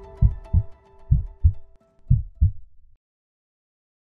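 Heartbeat sound effect: three double lub-dub thumps, about one a second, over a held music note that fades away. It all ends about three seconds in.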